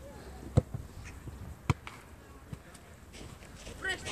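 Two sharp thuds about a second apart, the loudest sounds, with a few fainter knocks between them and a short high-pitched voice call near the end.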